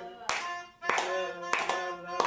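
A small group singing a birthday song together while clapping in time, the claps coming at an even beat a little slower than two a second.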